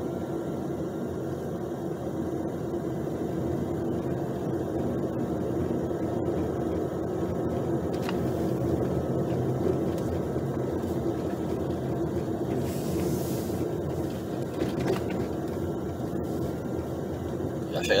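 Steady in-cabin drone of a car cruising, engine and tyre noise, with a few faint ticks and a brief hiss a little past the middle. The suspension is quiet, with no knocking from the freshly replaced stabilizer links.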